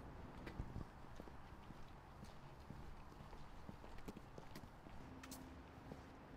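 Quiet low hum with a few faint, irregular light taps.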